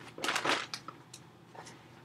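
Rustling and crinkling of a green fabric potato grow bag being handled and turned over, loudest in the first second, then a few faint clicks.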